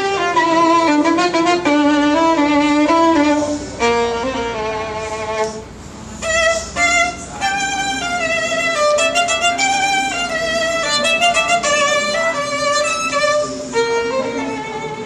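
Solo violin played with a bow: a quick passage of short stepping notes in the first few seconds, a brief softer moment near the middle, then the melody resumes.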